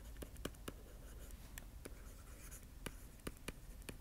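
Faint clicks and light scratches of a stylus on a drawing tablet as words are handwritten, several small taps a second at an uneven pace.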